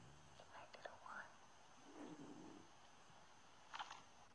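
Near silence with a faint, whispery voice, a few small clicks, and a brief scratchy rustle just before the end.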